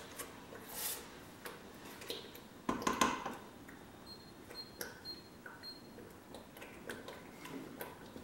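A wooden spoon stirring thick peanut paste in a stainless steel stockpot, with scattered clicks and knocks of wood against the pot and a louder knock about three seconds in. A few faint, short, high tones sound around the middle.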